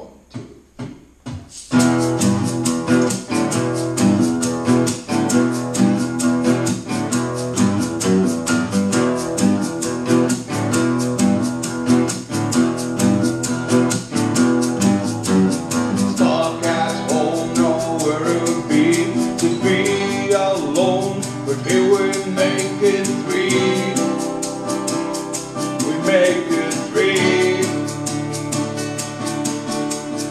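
Two acoustic guitars strumming a steady, upbeat rhythm, coming in after four short count-in hits. A man's voice starts singing over them about halfway through.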